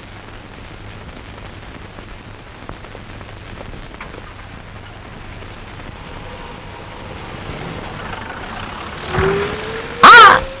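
Steady hiss with a low hum from an old film soundtrack, with a few faint clicks. It grows slowly louder, and a short louder burst comes about nine seconds in.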